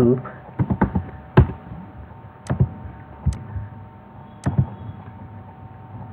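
Computer keyboard keystrokes: a quick cluster of clicks, one louder click, then single clicks spaced about a second apart.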